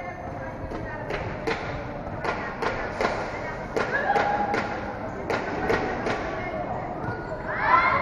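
A basketball being dribbled on a concrete court, a run of sharp bounces at about two a second, with voices in the background and a shout near the end.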